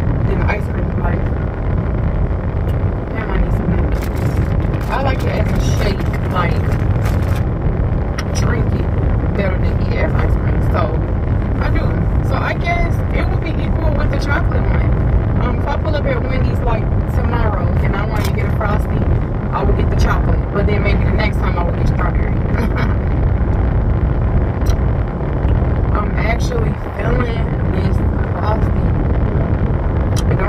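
Steady low rumble of road and engine noise inside a moving car's cabin, with a person's voice over it throughout.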